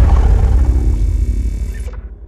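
Sound-design tail of an animated channel-logo intro: a deep boom with a few sustained tones, ringing out and fading away over the two seconds.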